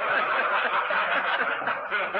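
An audience of men laughing together at a joke, many voices at once, on a lo-fi portable tape recording.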